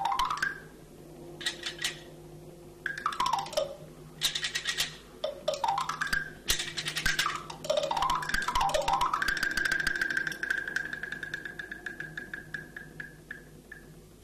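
High-pitched Chinese wooden fish (muyu) played by scraping, giving rapid runs of wooden clicks that sweep up and down in pitch, several times over. Near the end a fast run holds on one high pitch and fades. The effect evokes insects chirping.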